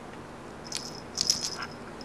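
Round metal ID tag on a cat's collar jingling as the cat moves: a brief jingle, then a louder one about half a second later.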